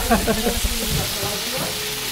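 A steady sizzling hiss of food frying, with the tail of a laugh and faint voices at the start.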